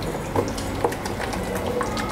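Wet squelching of a hand kneading green herb paste into thick yogurt in a stainless steel bowl, with a few brief clicks.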